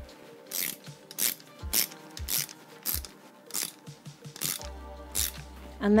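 Ratchet head of a torque wrench tightening the lower-leg bolts of a suspension fork to a light 5 newton metres: short bursts of ratchet clicks about every half second, over background music.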